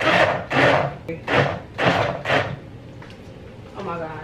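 Countertop blender pulsed in short bursts, about two a second, grinding ice and blackberries for a smoothie. The bursts stop about two and a half seconds in.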